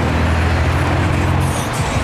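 Road traffic passing close by: a steady, loud rumble of car engines and tyres, with a brief hiss near the end.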